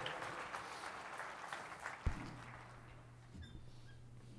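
Audience applause fading away over the first two seconds. A single low thump about two seconds in is followed by a steady low hum.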